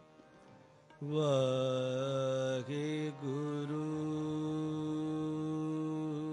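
Sikh kirtan music: after about a second of quiet, a long held note comes in suddenly and carries on steadily with slight bends in pitch, a voice drawing out a note over harmonium.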